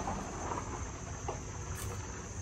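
Quiet background: a steady high drone of insects over a low rumble, with a couple of faint clicks.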